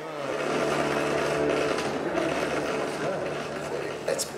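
Hollow-body electric guitar bowed with a violin bow: sustained, droning bowed notes over a steady low note, with a rough, scratchy edge.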